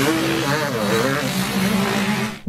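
Motocross dirt bike engines running on the track, their pitch rising and falling as the throttle is worked, over a heavy rush of engine and exhaust noise.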